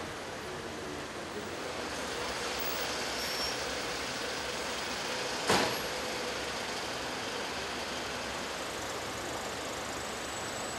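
Steady street traffic noise, with one sharp knock a little past halfway.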